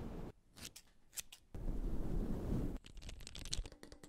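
A quick run of ASMR trigger sounds: fingers rubbing a furry microphone windscreen, a low scratchy rumble, broken up about a third of a second in by a few sharp, crisp clicks. The rubbing comes back briefly, then gives way near the end to a rapid run of small crisp clicks.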